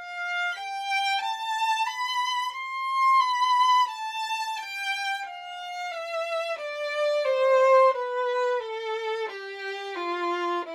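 Solo violin playing a slow line of single held notes, about one and a half a second. The line climbs step by step for the first three seconds, then steps steadily down in pitch through the rest.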